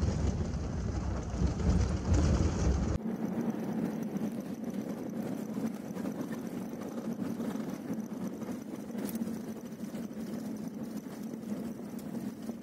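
Toyota SUV driving on a rough dirt road: a heavy low rumble for the first three seconds, then, after a sudden change, a steadier drone of engine and tyres heard inside the cabin.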